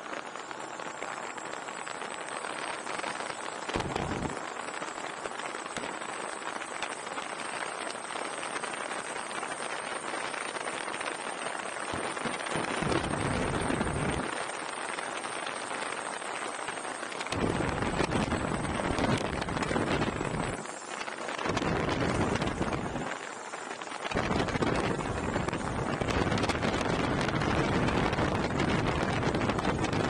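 Wind blowing over the microphone of a bass boat running at speed, over the rush of water along the hull. The steady noise is broken by heavier low buffeting that comes and goes, more of it in the second half.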